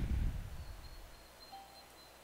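A low thump on the microphone right after the last word, dying away within about a second, then faint room noise with a thin high tone and a brief short tone near the end.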